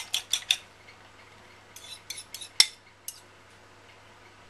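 Metal fork clinking against a small ceramic bowl as beaten egg is scraped out into a mixing bowl: a quick run of taps in the first half-second, then a few scattered clinks, the sharpest about two and a half seconds in.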